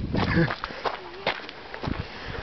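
Footsteps on a gravel path, about two steps a second, with a short stretch of voice near the start.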